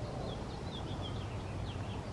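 A small bird chirping faintly, a run of short high chirps, over steady low outdoor background noise.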